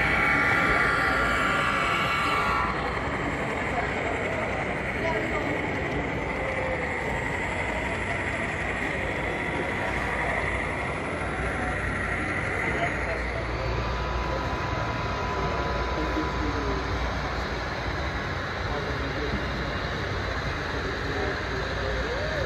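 Background chatter of a crowded exhibition hall, with HO-scale model trains running on a club layout. In the first two to three seconds a sound-equipped model diesel locomotive sounds its horn, a steady blast of several notes.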